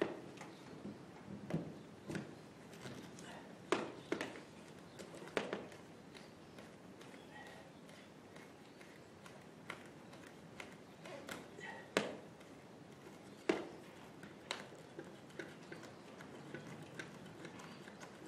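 A 50-amp RV shore-power plug being worked into the trailer's power inlet and its threaded locking ring screwed tight: faint, irregular plastic clicks and knocks, a dozen or so spread unevenly, in an echoey shop.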